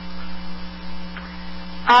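Steady electrical mains hum on a telephone call line, a few low held tones with no change in pitch, filling a gap between voices.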